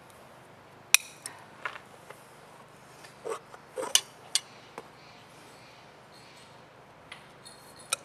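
Steel hoof nippers clipping a miniature zebu bull's hoof: a string of sharp, irregular snaps, the loudest about a second in, a cluster a little later, and a couple more near the end.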